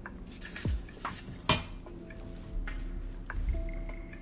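Metal spoons clinking and scraping against a glass measuring cup and a metal muffin tin while scooping thick cake batter: a run of separate sharp clinks, the loudest about one and a half seconds in.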